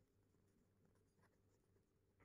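Near silence, with only the very faint scratch of a ballpoint pen writing on lined paper.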